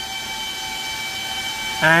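Steady rushing hum of a running Antminer S21 bitcoin miner's cooling fans, with several fixed whining tones over the noise, the sound of the machine hashing normally.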